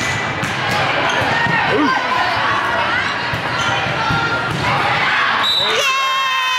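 Volleyball rally in a gym: a few sharp hits of the ball on players' forearms and hands among spectators' and players' voices.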